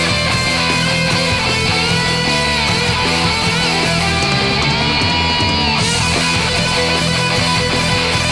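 Instrumental stretch of a thrash metal demo recording: loud, steady distorted electric guitars with bass and drums, no vocals.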